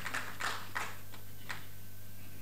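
Steady low electrical hum from a microphone sound system, with a few faint short ticks or rustles in the first second and a half.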